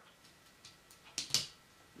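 Small plastic clicks of a blaster piece being pressed onto a Transformers figure's tank-mode turret: a few faint ticks, then two sharper clicks a little past halfway.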